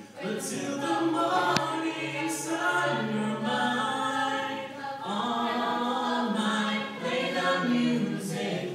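Mixed-voice high school chorus singing a cappella: sustained chords in several voice parts, the words carried on held notes, with no instruments.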